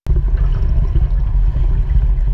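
Loud, muffled rumble and churn of water heard through a submerged camera as a swimmer kicks backstroke close by; it starts suddenly.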